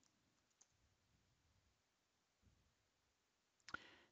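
Near silence with a few faint computer-keyboard key clicks, the sharpest pair near the end.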